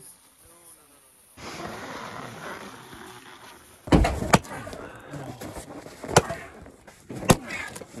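Double-bladed axe splitting a firewood log round, four sharp strikes: two close together about four seconds in, then one a couple of seconds later and a last one near the end.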